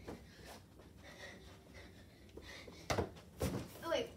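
Low room sound with faint scuffs, then two thumps about three seconds in as a child dives onto the carpeted floor, followed by a brief vocal sound.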